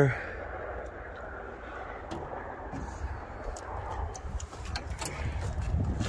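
Wind buffeting the microphone outdoors: a steady low rumble that grows a little toward the end, with a few light clicks from the camera being handled.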